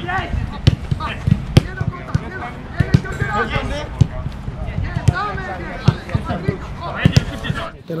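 Footballs being kicked on a grass pitch in a passing drill: a dozen or so sharp thuds at irregular intervals, amid shouting voices.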